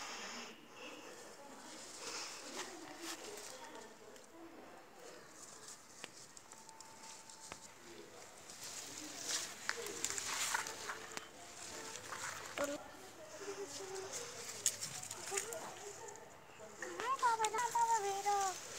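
Faint rustling of tomato-plant leaves being brushed aside, busiest in the middle, with a few light clicks. A voice is heard near the end.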